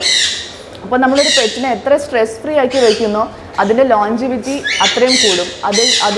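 Caged parrot squawking loudly twice, a harsh call at the start and another about five seconds in, over a woman talking.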